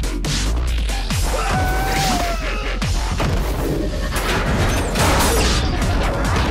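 Action-trailer music with a steady deep bass, over which come repeated hard hits and crashes of fight sound effects.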